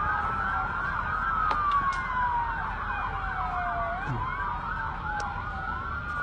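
Several police sirens sounding at once, overlapping: slow wails that fall and rise over a few seconds mixed with fast repeated yelps.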